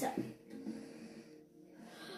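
A child's voice says "start", followed by a quiet pause with faint breathing.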